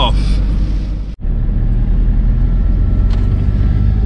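Camper van engine and road noise heard inside the cab: a steady low rumble, broken off for an instant about a second in.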